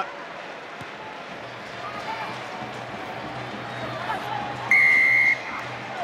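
Referee's whistle blown once, a single steady high-pitched blast of about half a second near the end, called for obstruction, over a steady stadium crowd murmur.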